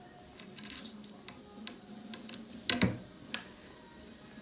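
Scattered light clicks and knocks of a cordless drill being handled against a screw in an OSB board, with a louder double knock about three seconds in. The drill's motor is not running.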